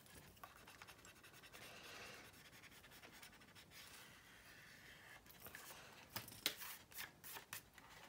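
Faint rubbing of a pencil eraser on the primed plastic wing of a scale model aircraft, erasing a pencil guide line. In the last couple of seconds there are a few light clicks and knocks from the model being handled.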